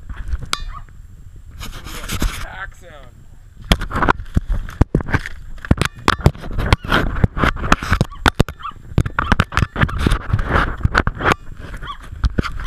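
Brown pelican beating its wings right over a GoPro. From about four seconds in there is a rapid, irregular run of knocks and thumps as wings and bill buffet and strike the camera.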